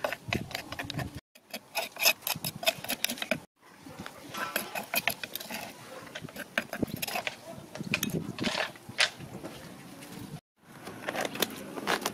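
A metal spoon scraping and tapping against a wooden mortar as a paste is scooped out: a run of quick clicks and knocks that breaks off abruptly three times.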